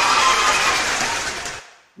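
Applause, a dense, even clapping that fades out near the end.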